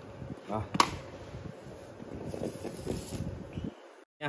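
Handling noise of a small plastic 12V clip-on fan being moved and set down, with a sharp click about a second in.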